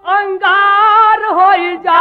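A high voice singing drawn-out, wavering melodic phrases in a Bhojpuri birha song, with a short break near the end.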